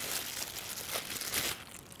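A clear plastic bag crinkling as it is pulled open and peeled off a ball of pie dough, dying away near the end.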